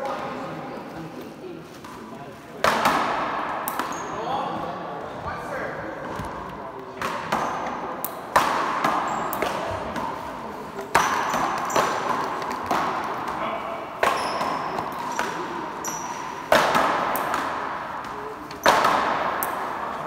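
Paddleball rally on an indoor court: seven sharp smacks of the ball off the paddles and wall, a few seconds apart, each ringing out in the large hall. Short high sneaker squeaks on the court floor come between the hits.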